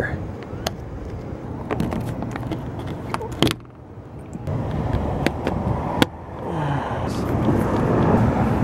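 Hand work on plastic car-body trim: scattered sharp clicks and knocks as a clip and lip pieces are fitted, over a steady outdoor noise. The sound drops away abruptly twice.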